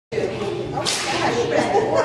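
Indistinct voices in a large hall, with a short, sharp noisy burst about a second in.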